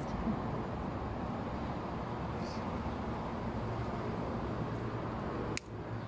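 Steady outdoor background noise like distant traffic, with one sharp click near the end.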